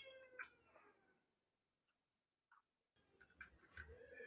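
Near silence: room tone over a video call, with a faint high-pitched, drawn-out tone fading out in the first half second and a few faint clicks.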